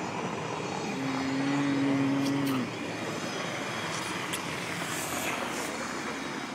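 Street traffic noise: a steady wash of passing vehicles. About a second in, a low steady drone starts and holds for nearly two seconds before dropping away.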